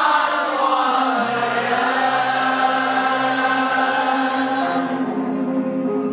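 A large mixed group of men and women singing a song together in unison, holding long drawn-out notes; the sound thins out near the end as a phrase closes.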